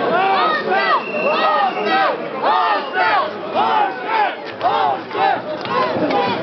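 A protesting crowd shouting together in a rhythmic chant, about two shouts a second.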